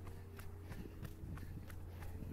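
A runner's own footfalls on a tarmac track, picked up close by a body-worn camera: short, regular steps at about three a second, over a steady low rumble.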